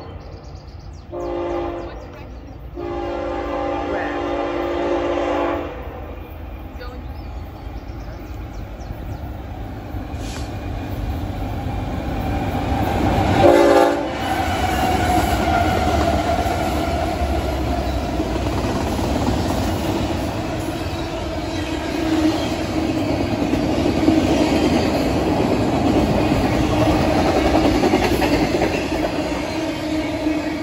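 BNSF freight train's diesel locomotive horn sounding a short blast about a second in, a longer one of about three seconds, then a brief loud blast near 14 s as the locomotives come past. After that the locomotives' engines run by and the trailer-carrying intermodal cars follow with a steady rumble and clatter of wheels on the rails.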